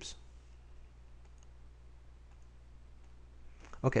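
A few faint clicks from computer controls over a low steady hum.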